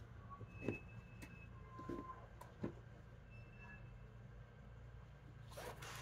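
A quiet room with a low steady hum and a few soft taps, the first three within about three seconds: tarot cards being handled and laid on a table.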